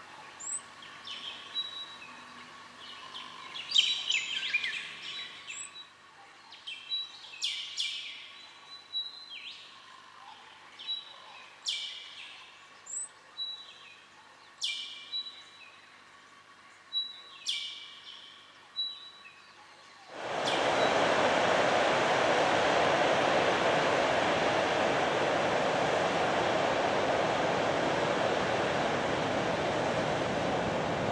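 Bassian thrush calling: a series of short, high whistled notes and quick downward-sweeping phrases, one every second or so. About two-thirds of the way through, the sound cuts suddenly to the louder, steady rush of ocean surf breaking on the shore.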